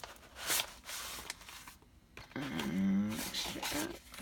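Paper rustling and crinkling as an envelope of papers is handled and opened, then a drawn-out pitched sound, wavering in pitch, for about a second and a half near the end.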